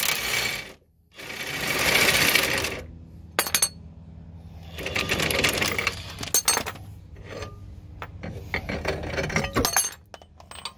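Metal parts and tools clinking and knocking while a front control arm is worked off a Jeep axle, with several longer bursts of rasping, scraping noise between the sharp clicks.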